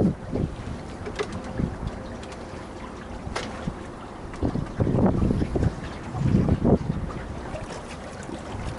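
Wind buffeting the microphone in gusts, three of them louder, over the steady wash of water along the hull of a small sailboat under sail.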